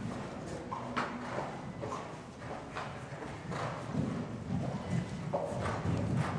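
Hoofbeats of a horse cantering on a soft sand arena surface: dull, muffled thuds that come irregularly, with a few sharper clicks.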